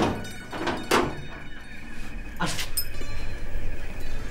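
A few dull thuds, about a second or more apart.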